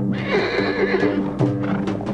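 A horse whinnies once, a wavering call that falls in pitch during the first second, over film score music holding sustained chords.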